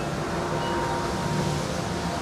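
Steady wind noise with a few faint wind chime tones ringing through it.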